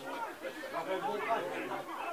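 Indistinct chatter: several voices talking over one another in the background, with no words clear.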